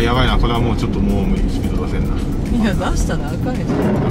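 Steady in-cabin road noise of a gasoline Toyota RAV4 driving on a rain-wet mountain road, with brief voices near the start and again about three seconds in.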